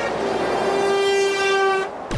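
A passing lorry's horn sounding one long, steady blast over motorway traffic, cutting off sharply near the end: a driver honking in support of the roadside protest.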